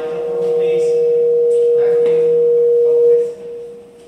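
Public-address microphone feedback: a steady, piercing tone that grows louder and then cuts off suddenly a little over three seconds in, over a man's faint speech.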